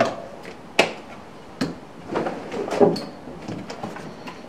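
Handling noise of aerosol cans and a bottle being moved around and put back into a fabric tool bag: a few sharp clicks and knocks, about a second and a second and a half in, then rustling and light knocking.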